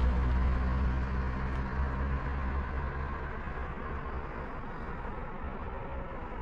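A vehicle engine running close by: a steady low rumble, strongest for the first two seconds and then easing to a quieter, rougher rumble.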